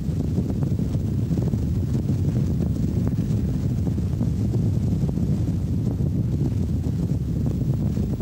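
Wind buffeting the microphone on a high, exposed building ledge: a steady, fluttering low rumble.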